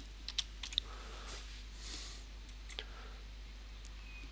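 Computer keyboard keys tapped quickly as a password is typed: a short run of faint clicks in the first second, then two more single clicks later on.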